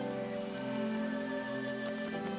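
Soft background music of sustained, held chords that stay steady over a faint even hiss.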